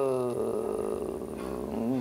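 A woman's voice drawing out a word with falling pitch, then holding a long, low, creaky hesitation sound, like a drawn-out 'eee', before speech starts again.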